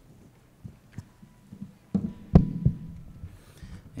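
A few light knocks, then a cluster of low thumps and bumps about halfway through, the loudest a single heavy thump, picked up close by the lectern microphone as someone steps up to it and settles at it.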